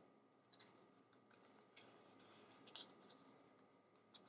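Near silence with faint, scattered small ticks and rustles of paper and ribbon being handled on a craft table.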